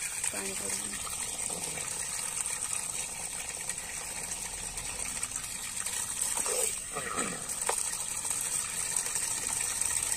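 Homemade submersible water pump, a 555 DC motor in a PVC end cap, running under water and sending out a steady gush that splashes down. A steady high whine runs underneath throughout.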